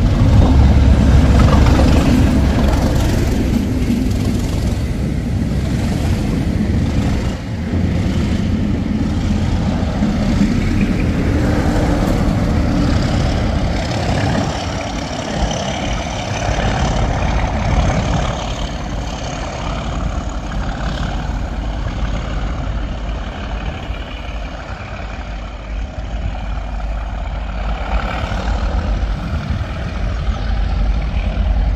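Diesel locomotive-hauled train passing at close range: the leading locomotive's engine rumbling loudest as it goes by at the start, a run of clacks from the carriages' wheels, then the rear diesel locomotive passing and its engine fading steadily as it pulls away.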